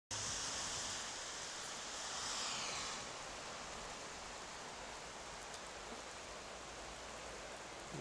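Swollen river rushing past as a steady wash of water noise, a little louder and hissier for the first three seconds.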